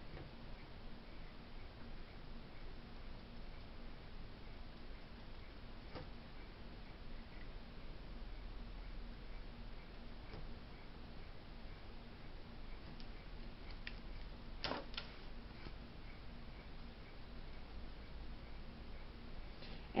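Quiet room with a faint, evenly repeating ticking and a few small clicks or taps; the clearest click comes about three-quarters of the way through.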